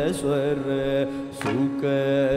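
Carnatic classical music: a male voice sings a wavering, ornamented melodic line with violin accompaniment over a steady drone. A couple of sharp drum strokes fall in the first half and near the end.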